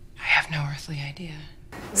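Speech: a few quiet, whispered words, lasting about a second.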